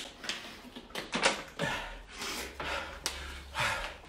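A man drinking from a plastic water bottle while out of breath from exercise. There are a few short gulps and breaths, and light clicks and crackles from handling the bottle.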